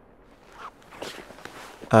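Soft rustling and scuffing of cloth, like clothes being handled and laid down, starting about half a second in and running in short scratchy spurts.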